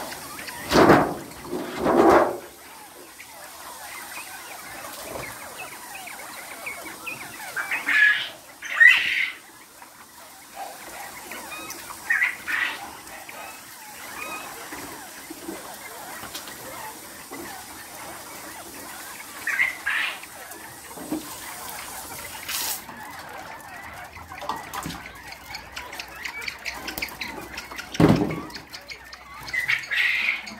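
Scattered short calls from caged quail and other poultry, over a steady low background hum, with a few louder knocks and clatter from handling the cages.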